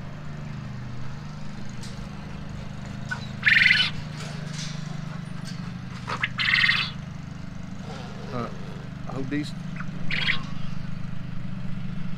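Caged quail calling twice in short high chirps, over a steady low mechanical hum.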